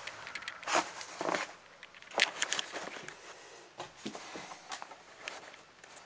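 Irregular clicks, knocks and rustles from a handheld camera being moved and set down, with a sharp click a little after two seconds in.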